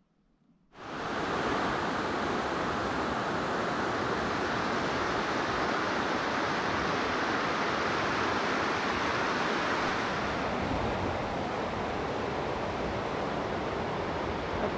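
Steady rush of white water from rapids on the Deschutes River, cutting in suddenly about a second in.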